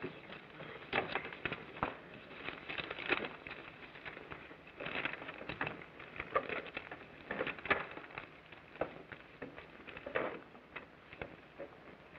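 Paper ballots being written on, handled and handed in around a table: irregular small rustles and clicks throughout, with no voices.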